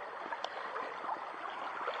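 Shallow creek water running steadily over gravel, with one faint tick about half a second in.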